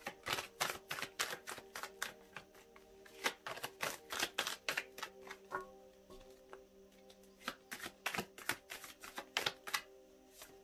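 Deck of tarot cards being shuffled by hand: a quick, irregular run of card clicks and snaps, easing off briefly a little past halfway, over background music with long held notes.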